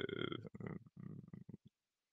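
A man's voice trailing off from a word into a low, creaky hesitation sound that stops about three-quarters of the way through.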